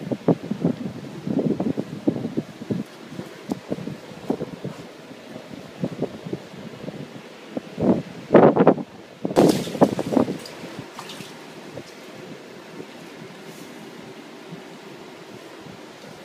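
Wind gusting on the microphone in uneven bursts, with irregular knocks and bumps. The strongest gusts come about halfway through.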